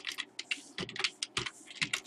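Typing on a computer keyboard: a run of quick, irregularly spaced keystroke clicks.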